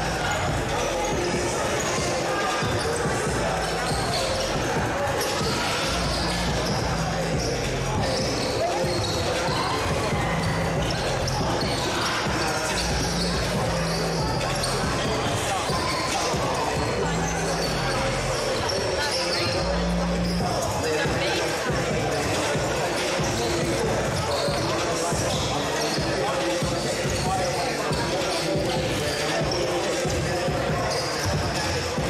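Basketball gym ambience: a crowd chattering in an echoing hall, with a basketball bouncing on the hardwood floor.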